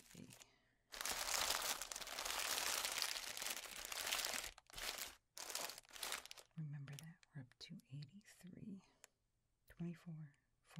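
Candy wrappers of a pile of wrapped Reese's peanut butter cups and mini chocolates crinkling as hands push and spread the pile: a dense crinkle lasting about three and a half seconds, then two shorter bursts. Soft speech follows in the second half.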